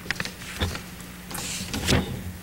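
Handling noises at a hearing-room desk microphone: a few short clicks and knocks, a brief rustle, and a louder thump near the end, over a steady low electrical hum.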